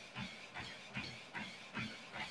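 Running shoes striking the belt of a compact folding treadmill at a jog, set to 5.8, about two and a half footfalls a second over a steady hiss.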